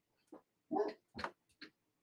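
A dog barking faintly, a few short barks.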